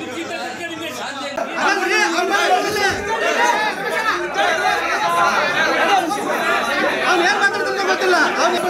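A crowd of men's voices talking over one another in a heated argument, with no single speaker clear. The voices grow louder about one and a half seconds in.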